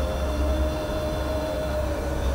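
Steady low background hum with a thin, steady higher tone above it, unchanging throughout.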